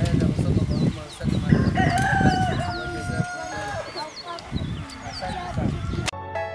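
A rooster crowing once, one long call about two seconds in, with small birds chirping repeatedly. A low, gusty rumble is loudest in the first two seconds.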